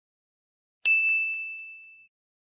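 A single bright ding, a struck chime sound effect, sounding a little under a second in and ringing away over about a second.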